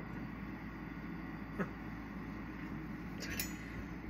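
Steady hiss of a lit glassworking bench torch, with a single faint click about one and a half seconds in and a brief light clink a little after three seconds.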